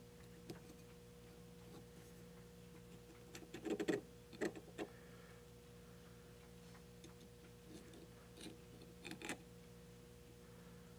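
Steel scriber tip scratching and clicking against the metal end of the die handle as it traces around the hex adapter: short scrapes in small clusters, the loudest about three and a half to five seconds in and another near the end. A faint steady hum lies underneath.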